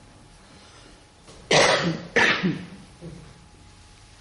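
A person coughs twice in quick succession, starting about a second and a half in.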